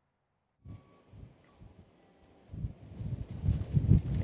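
Wind buffeting an outdoor microphone in a snowstorm: a brief dead silence, then faint hiss with irregular low rumbling gusts that grow stronger in the second half.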